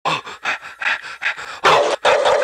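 Dog sound effect, likely a pit bull sample, opening a funk track: short rhythmic panting breaths about five a second, then a louder burst near the end.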